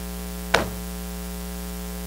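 Steady electrical mains hum in the recording, with one short, sharp crackle about half a second in as Bible pages are leafed through at the lectern.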